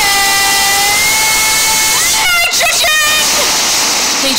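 Song playback: a female singer holds one long high note, which steps slightly up about a second in, then sings a short wavering vocal phrase about two seconds in over a bright, hissy backing.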